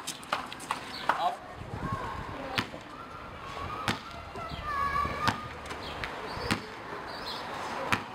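A basketball being bounced on pavement and caught: a sharp slap about every second and a quarter, with a few lighter clicks in the first second.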